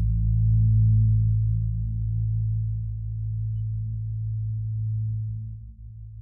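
Electric bass guitar, isolated from the rest of the band, holding one long low note that rings on and slowly fades, then drops away sharply near the end.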